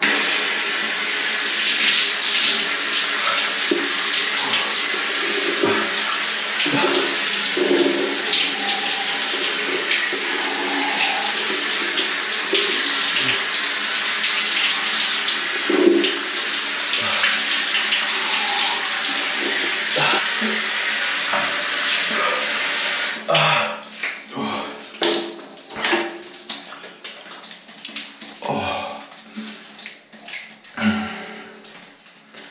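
Shower water spraying hard and steadily, switched on suddenly and cutting off after about 23 seconds. After it stops there is a run of quieter, irregular short sounds.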